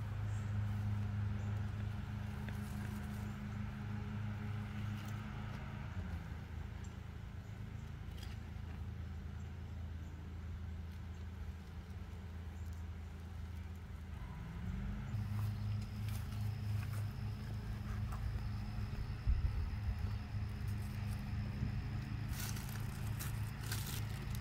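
A steady low motor hum that drops in pitch about six seconds in and rises back again around fifteen seconds, with faint scattered scrapes and rustles.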